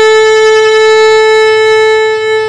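Violin playing one long, steady bowed note.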